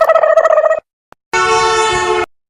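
Two short comedy sound effects one after the other. First a pitched call that flutters rapidly and breaks off under a second in. Then, after a brief gap, a steady, buzzy horn-like blast of about a second that cuts off sharply.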